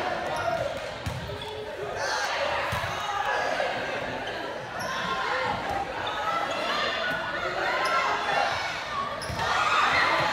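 Volleyball rally in a large gymnasium: several sharp smacks of the ball being struck by players, echoing in the hall, over the continuous chatter and shouts of a crowd of students.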